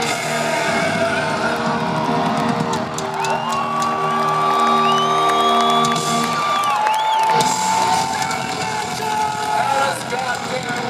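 Live hard-rock band playing loud through a theatre sound system, with steady chords and long held lead notes. One note is held for about three seconds, then bends near the seven-second mark into another long note. Audience cheering underneath.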